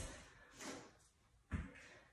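A quiet stretch broken by a single soft thump about one and a half seconds in, from a small dumbbell or the body meeting a foam exercise mat during a plank row.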